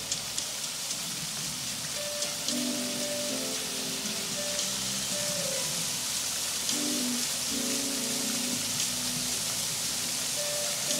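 Dancing fountain jets spraying up from deck-level nozzles and splashing back down, a steady hiss of falling water, with music playing alongside.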